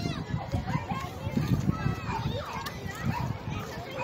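Children's voices calling and chattering at play, over a steady rumble of wind on the microphone.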